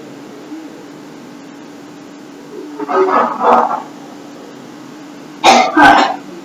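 A person coughing: two coughs about three seconds in, then two louder, sharper ones near the end.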